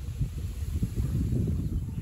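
Wind buffeting the microphone: an irregular, fluttering low rumble.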